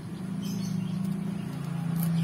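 Steady low hum of a motor engine, growing slowly louder.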